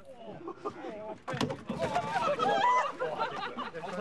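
Several people talking and calling out at once, overlapping voices with no other clear sound.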